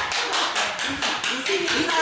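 Hands clapping quickly and evenly, about five claps a second, with voices and laughter over them.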